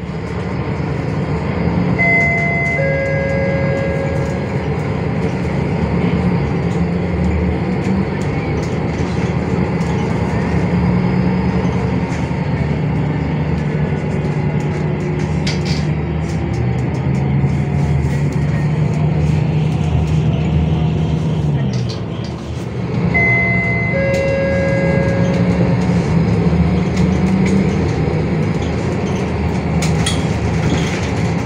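Inside the cabin of an MAN NL323F bus under way: its MAN D2066 six-cylinder diesel engine running, the note rising and falling several times as the bus accelerates and eases off, with a short dip a little past the 20-second mark. A short, falling two-note electronic chime sounds twice, a couple of seconds in and again about 23 seconds in.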